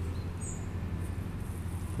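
A steady low hum with a brief high chirp about half a second in.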